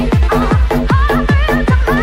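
Fast electronic dance music played in a DJ set: a steady, rapid four-to-the-floor kick drum, each kick dropping in pitch, under a repeating bass pattern and a wavering synth lead melody.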